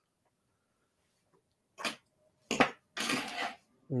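Near silence, then three short breathy bursts of a man chuckling through his nose in the second half.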